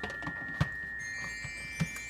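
Background music with long held notes, and two sharp knocks about a second apart as the lid of a sous vide cooker is set in place.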